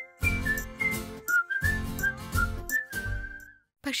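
Title-card theme jingle: a whistled melody of short notes over a pulsing beat, cutting off shortly before the end.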